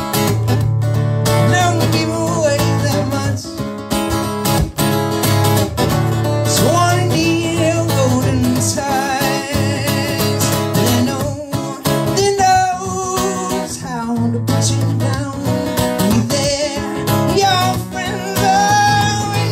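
A man singing while strumming chords on an acoustic guitar.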